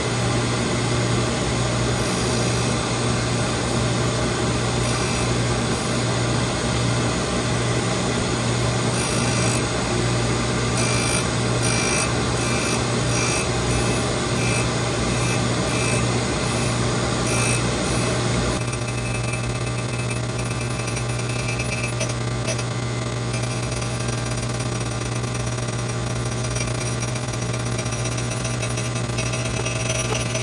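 Surface grinder running, its abrasive wheel grinding the steel front ring of a Mauser receiver as the action is turned by hand against it: a steady motor hum under continuous grinding noise. The grinding eases slightly about two-thirds of the way through.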